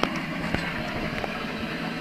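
Steady background hum and hiss with a few faint clicks.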